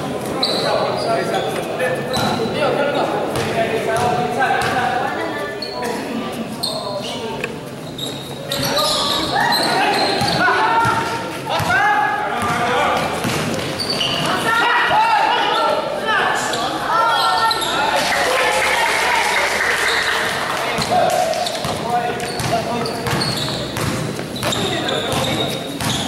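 A basketball game in a large indoor hall: the ball bouncing on the court with repeated short knocks, while players and onlookers shout and call, loudest in the middle of the stretch. The hall adds echo.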